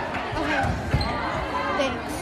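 A volleyball struck once about a second in, a sharp smack over crowd voices and chatter in the gymnasium.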